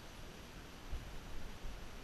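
Faint steady hiss of outdoor background noise on a helmet-mounted camera, with a few dull low thumps between about one and two seconds in.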